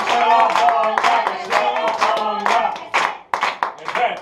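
A group of people clapping together in a steady rhythm, about three to four claps a second, with voices singing along. The clapping and singing thin out a little after three seconds in.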